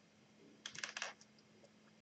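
Faint clicking of computer keys: a quick run of five or six clicks within about half a second, starting a little over half a second in.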